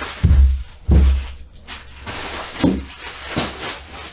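Hands rummaging through a box of kit hardware: two heavy thumps early on, then rustling and lighter knocks and clatter of parts.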